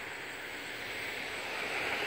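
Distant engine noise, a steady hiss without clear pitch that slowly grows louder.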